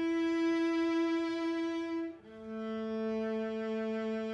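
String quartet playing long, sustained bowed notes: a single held note for about two seconds, then after a brief break two notes, one low and one higher, held together.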